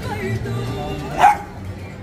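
A single short dog bark a little over a second in, the loudest sound, over background music.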